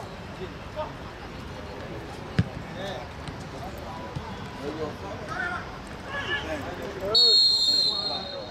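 Players shouting across a football pitch, with one sharp ball kick about two and a half seconds in. Near the end a referee's whistle blows once, loud and steady for under a second, stopping play for a foul as a player goes down.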